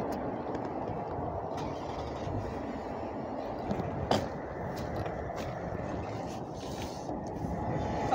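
Steady low rumble of road traffic, with a few sharp clicks, the loudest about four seconds in.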